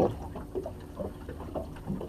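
Faint ticks and soft scraping of a filleting knife being pushed into a whiting's head, over a low steady background rumble.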